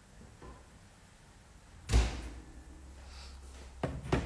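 A single sharp thud about two seconds in, the loudest thing here, followed near the end by a lighter knock.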